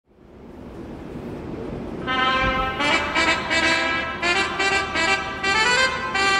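Station train-approach chime for a Gyeonggang Line platform: a brass-like melody of short notes that starts about two seconds in, after a faint hiss fades in.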